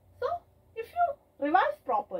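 A woman speaking: only speech, in short phrases with brief pauses.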